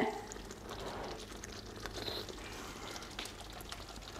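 Faint bubbling and small pops of a creamy curry sauce simmering in a pan, with a few light ticks over a low steady hum.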